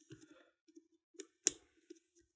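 A few soft metallic clicks of a wire tool being worked inside an Adlake railroad padlock, probing for its spring-loaded tensioning disc; the sharpest click comes about one and a half seconds in.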